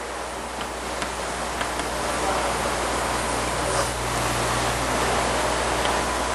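Steady hiss with a low hum underneath, growing louder over the first few seconds and then holding, with a few faint clicks.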